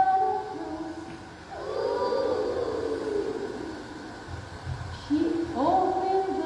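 Call-and-response singing: a woman sings a line, then a group of young children answers together with a long, drawn-out note that swoops up and down in pitch. The children come in again near the end.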